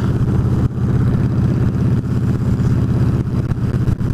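Victory Jackpot's V-twin engine running steadily as the motorcycle cruises along the road.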